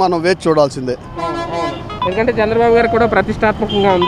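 A vehicle horn honks for about a second, starting about a second in, over a man talking in street traffic.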